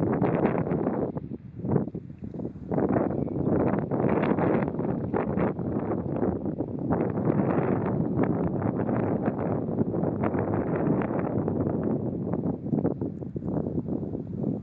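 Wind noise on the microphone: a steady, rough rushing that dips a little between about one and two and a half seconds in.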